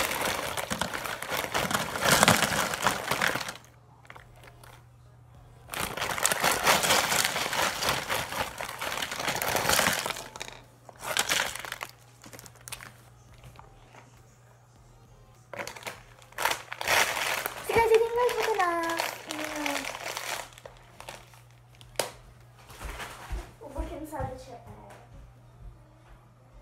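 Shiny plastic potato chip bag crinkling as chips are shaken out of it onto a paper plate, in several bursts of crackly rustling with short pauses between.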